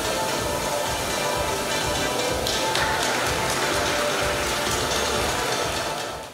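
Music playing with a crowd clapping over it. The dense, crackly clapping grows stronger about halfway through as the ceremonial ribbon is cut.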